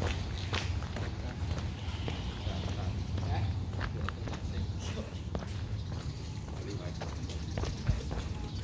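Footsteps of a person walking on brick paving, irregular sharp taps over a steady low rumble.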